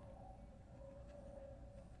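Near silence: a faint steady hum with a low rumble, a pause in the episode's soundtrack.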